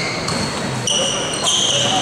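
A basketball being dribbled on a gym court, with several short high-pitched squeaks from sneakers on the floor.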